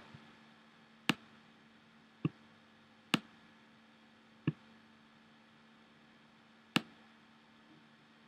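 Computer mouse clicking: five single clicks, spaced about one to two seconds apart, over a faint steady hum.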